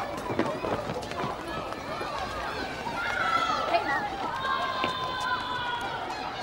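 Schoolchildren chattering and calling out together in a playground, with a steady high tone coming in about four and a half seconds in.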